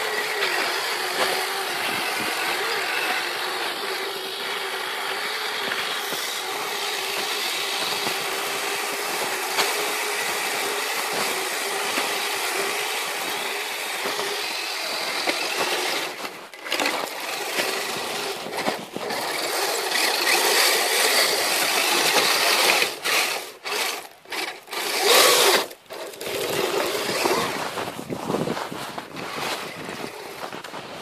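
Electric motor and gearbox of a Kyosho Blizzard RC snowcat whining as it drives its tracks through snow. Steady for about the first fifteen seconds, then cutting out and picking up again several times as the throttle is let off and reapplied.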